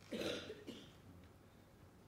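A person coughs once, short and sudden just after the start, with a fainter second sound right after it.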